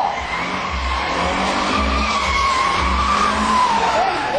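Toyota Starlet's tyres squealing as the car spins and slides in a drift: one long, loud squeal that rises a little in pitch, then falls away near the end.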